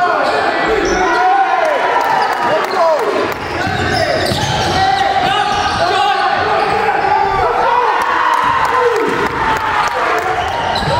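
Live basketball game sounds in a reverberant gym: a ball bouncing on the court, sneakers squeaking on the floor in short gliding chirps, and players' voices.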